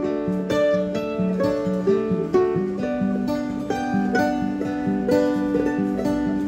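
Mandolin and acoustic guitar playing together in an instrumental passage, with a steady run of plucked notes over held chords.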